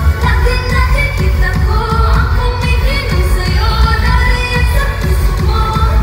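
A woman singing a pop ballad live into a handheld microphone over a loud band backing with heavy bass and steady drums, heard through the venue's PA.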